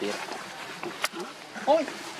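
Baby macaque crying in distress: a series of short calls that bend up and down in pitch, the loudest near the end, with a sharp click about halfway.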